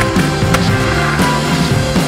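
Music with changing melodic notes plays over a skateboard grinding along a wooden bench edge and then rolling on a hard court surface.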